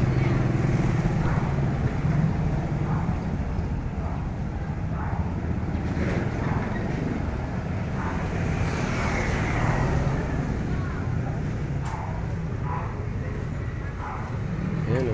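Street traffic: small motorcycle engines running as they pass, loudest in the first few seconds, with faint voices in the background.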